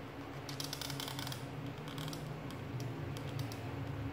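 Black marker pen scratching on paper in short strokes: a quick run of scratches in the first second and a half, then scattered single ticks. A steady low hum runs underneath.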